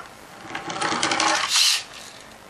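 Pullback spring motor of a toy roller base whirring as it unwinds, spinning a toy motorcycle's wheels with a rapid gear rattle, ending in a short, higher-pitched burst near the end.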